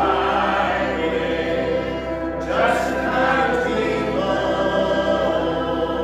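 Church congregation singing a hymn together in sustained notes, with a new phrase starting about two and a half seconds in.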